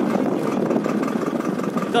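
Tractor engine running steadily while pulling a mounted inter-row cultivator through the soil.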